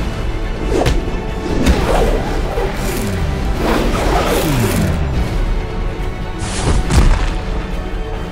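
Action film score under fight sound effects: sharp hits early on, a run of falling swooshes in the middle, and a heavy boom about seven seconds in.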